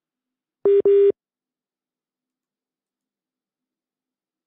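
Telephone line tone: two short beeps at one low pitch, back to back, about a second in, as a phone call is placed to a correspondent.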